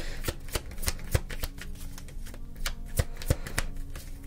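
A deck of tarot cards being shuffled by hand: an irregular run of crisp card clicks and flicks, several a second.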